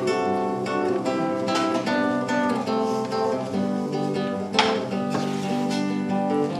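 Nylon-string electro-acoustic guitar playing a picked chord introduction, note after note ringing into the next, with one sharper strum about four and a half seconds in.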